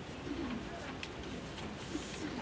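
A bird cooing faintly twice over quiet room tone.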